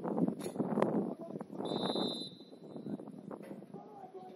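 Referee's whistle, one short blast a little under two seconds in, signalling that the free kick can be taken, over players shouting on the pitch.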